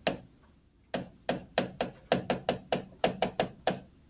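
Stylus tapping and clicking against a tablet screen while handwriting: a quick, uneven run of sharp clicks, several a second, starting about a second in.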